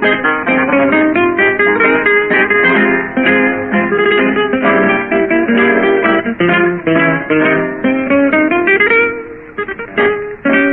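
A trio of acoustic guitars playing a tango from an old electrically recorded 78 rpm disc: plucked melody notes over strummed and picked chords, with a short dip in the playing near the end before a new phrase starts.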